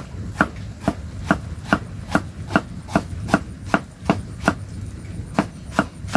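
Knife chopping food on a round wooden chopping board: a steady run of sharp strikes, about two and a half a second.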